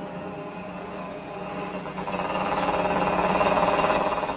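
Small motorcycle engine running steadily with a fast, even pulse, getting louder over the last two seconds as the bike rides out past.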